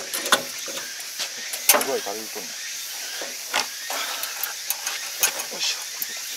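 Scattered scrapes and knocks as caked mud and straw are pulled out by hand from an opening in a combine harvester's body, over a steady hiss. A voice is heard briefly about two seconds in.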